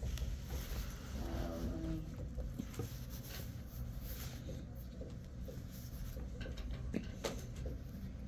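Dry-erase marker writing on a whiteboard: short scratching, squeaking strokes over a low steady room rumble.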